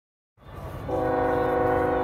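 A horn sounding one long, steady blast of several pitches together, over a low rumble. It comes in just after the start and holds steady from about a second in.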